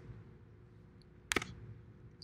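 Quiet room tone broken once, a little past halfway, by a short sharp click.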